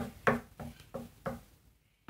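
Knife scraping wet cucumber seeds out of a halved cucumber onto paper: about five short scrapes, roughly three a second, each fainter than the last.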